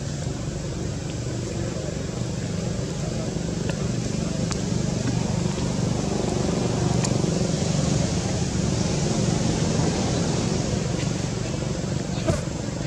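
Steady low outdoor rumble, like distant traffic or wind on the microphone, swelling slightly mid-way, with two faint clicks.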